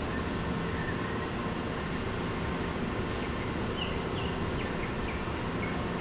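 Dry-erase marker writing on a whiteboard: a few faint, short squeaks over a steady low room rumble.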